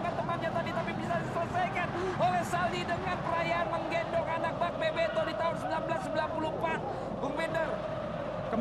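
Men's voices calling and talking over a steady background hum, with no single voice carrying on for long.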